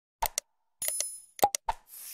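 Sound effects of an animated like-subscribe-bell-share end screen: sharp mouse-click sounds in two quick pairs, one near the start and one near the end, with a notification-bell ding ringing about a second in.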